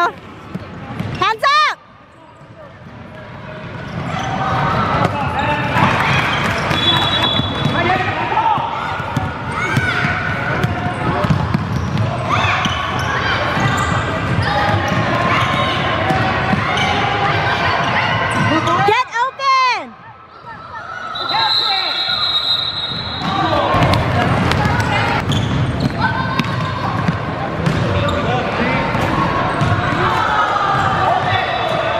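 A basketball game in a large gym: a ball bouncing on the hardwood floor amid spectators' and players' voices echoing in the hall. The sound drops away suddenly twice, about two seconds in and about two-thirds of the way through, each time with a quick rising sweep.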